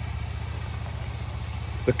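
An engine idling: a steady low hum with an even pulse, unchanged throughout.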